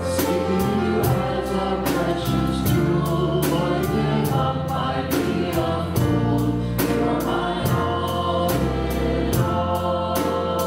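Church praise band playing a contemporary worship song, with a group of singers on microphones singing the melody over the band and a steady beat.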